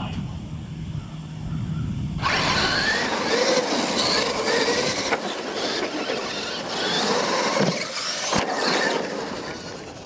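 R/C monster trucks' electric motors whining and rising and falling in pitch as they race over dirt, starting suddenly about two seconds in, with a sharp knock near the end.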